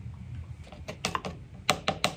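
Plastic bag crinkling and a small cup clicking against a paint can as cornstarch is measured into the gesso mix: light, irregular clicks and rustles that grow sharper and closer together near the end.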